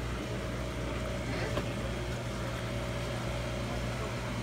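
Steady low hum and hiss of running aquarium equipment in a fish store, with a faint steady tone over it.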